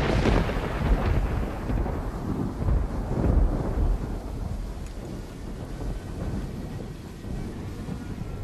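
A deep rolling rumble that comes in surges about a second and about three seconds in, then slowly dies away.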